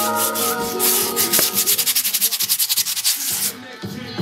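Grip tape being worked onto a skateboard deck by hand: quick, even rasping strokes against the gritty sheet, stopping shortly before the end. Music fades out in the first second.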